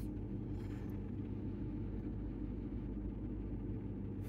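Ford F-150 engine idling steadily, a low, even hum heard from inside the cab.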